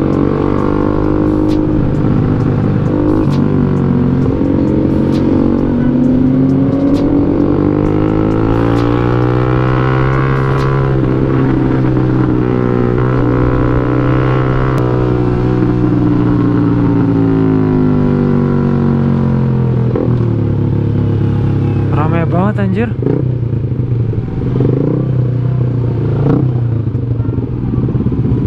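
An underbone motorcycle's engine is heard from the rider's seat. Its pitch climbs smoothly as the bike accelerates, holds, then falls away as it slows. In the last few seconds it runs lower and more unevenly in slow traffic.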